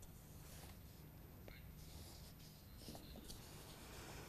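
Near silence: a faint steady low hum and hiss, with a few soft clicks.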